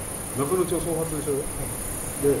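A person's voice speaking briefly, starting about half a second in, over a steady high-pitched hiss.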